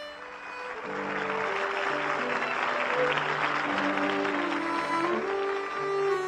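Audience applauding over tango music. The clapping swells about a second in and dies away near the end, with the music's held melody notes beneath.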